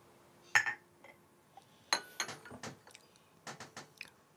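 A handful of light clinks of a porcelain teacup against its saucer as it is lifted and set down, short sharp knocks with a brief china ring, bunched in the second half.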